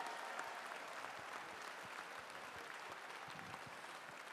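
Audience applauding, the applause dying down gradually.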